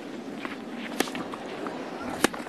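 Tennis rally on a clay court: a racket strikes the ball once, sharply, about a second in, amid the players' quick footsteps and shoe scuffs on the clay.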